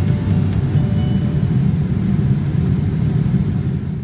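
Boeing 787-8 airliner cabin noise in flight: a steady low rumble of engines and airflow, fading out at the very end.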